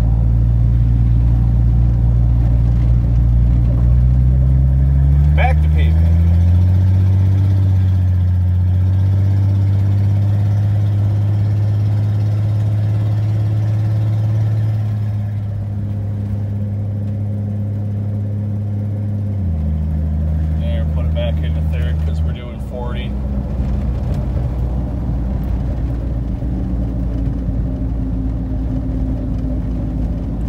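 1982 Ford F-150's inline-six engine pulling the truck, heard from inside the cab, loud through an exhaust that is partly broken off. The engine note climbs over the first several seconds, holds steady, then drops in two steps about two-thirds of the way through.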